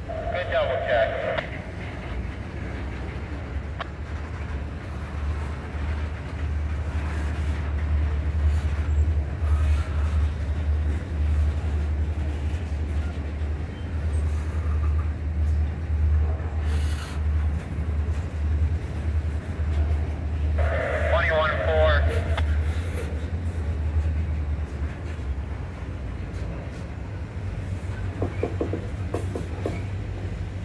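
A freight train of covered hopper cars rolls past at close range, making a steady low rumble of steel wheels on rail that pulses as the cars go by. Brief higher-pitched sounds come through about a second in and again about two-thirds of the way through.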